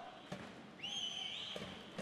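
Ice-hockey arena sound: a high, slightly wavering whistle tone rises in about a second in and holds, over faint arena background with a couple of soft knocks.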